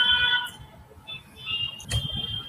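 Faint steady electronic tones that fade out within the first half second, followed by a brief fainter higher tone near the middle and a short click just before the end.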